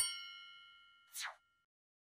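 A bright chime sound effect: a sharp struck ding whose ringing tones fade away over about a second and a half. It marks an on-screen step of the worked example appearing. A short, soft swish follows about a second in.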